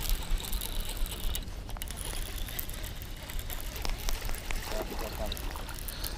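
Baitcasting reel being cranked, with scattered light clicks, as a small bass is reeled in and splashes at the surface near the bank; a steady low wind rumble sits on the microphone.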